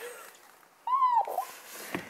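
A cat's single short meow, rising and then falling in pitch, about a second in.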